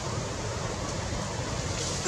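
Steady rushing outdoor background noise, wind-like, with no distinct events.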